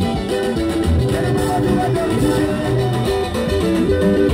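Live band music played loud, led by plucked guitar lines over a steady bass pulse, with little or no singing.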